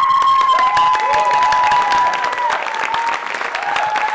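Theatre audience applauding at the close of a stage play, with a long held tone over the clapping.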